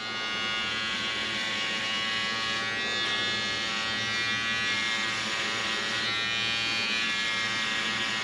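Electric hair clippers buzzing steadily while cutting hair along the side of the head, starting the bald line.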